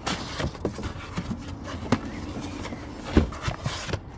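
Handling noise from a cardboard box and foam packing as a heavy power station is lifted out of it: scattered light knocks and rustling, with one heavier thump a little after three seconds in.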